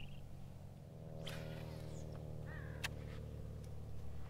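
A fishing cast from the bow of a bass boat: a quick swish of the rod about a second in, then a sharp click a couple of seconds later. Under it, a steady motor hum, the boat's trolling motor, comes up about a second in and carries on.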